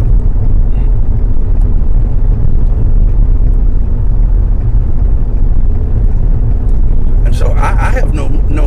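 Steady low rumble of road and engine noise inside a moving police car's cabin.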